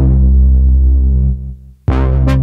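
Korg MS2000 virtual analog synthesizer sounding a deep, sustained bass note that is bright at the attack and grows duller as it holds. It dies away about a second and a half in, and a new, brighter chord starts just before the end.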